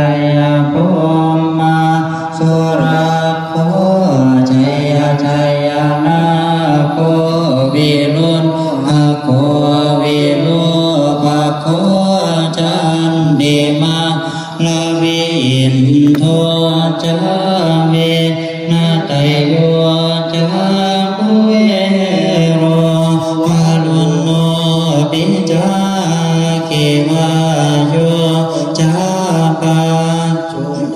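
Thai Buddhist monks chanting together in unison from the evening chanting service (tham wat yen), a continuous recitation held on a low, nearly level pitch with small steps up and down.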